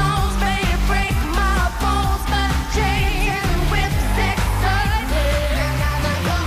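Pop song performed on stage: female lead vocals sung over a heavy electronic dance backing with thick, sustained bass notes.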